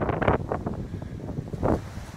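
Wind buffeting the microphone: an uneven low rumble that surges in gusts, with one stronger gust near the end.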